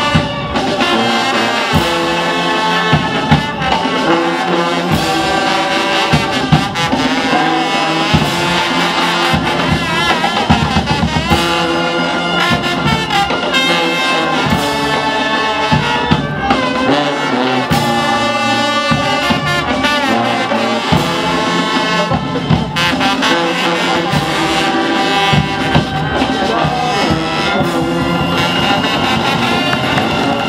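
Brass band playing, with trumpets and trombones over steady drum and cymbal beats.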